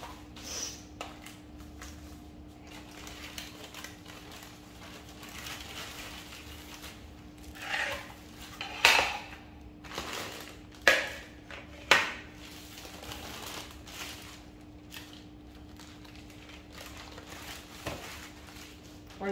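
Plastic freezer bags crinkling and rustling as food is packed into them, with three sharp clacks of a plate or baking tray set down on the kitchen counter in the second half.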